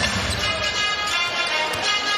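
Music over the arena's sound system, with a basketball being dribbled on the hardwood court beneath it.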